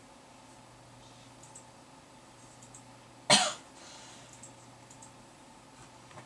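A single short cough about three seconds in, over a faint steady hum and a few faint ticks.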